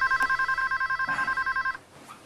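Phone ringing with an electronic ringtone: a fast, steady two-tone warble that stops near the end.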